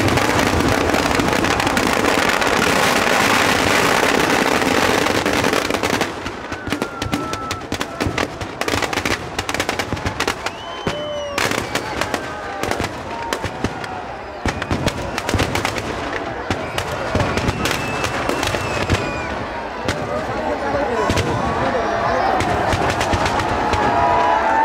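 Firecrackers packed inside a burning Ravana effigy going off. For about the first six seconds they make a dense, continuous din mixed with crowd noise, then they break into loud separate bangs in rapid, rattling strings.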